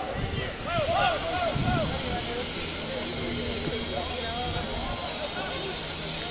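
Many voices shouting short overlapping calls during open rugby play, over a steady rushing hiss that swells through the middle.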